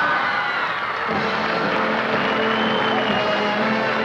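A live studio band playing, with the audience cheering and whooping over it.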